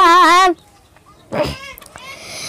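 A girl's voice singing a Bengali ghazal, holding a wavering note that breaks off about half a second in. After a short pause, a brief breathy vocal sound comes just past the middle.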